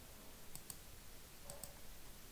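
Faint computer mouse clicks: four short clicks in two quick pairs, about a second apart.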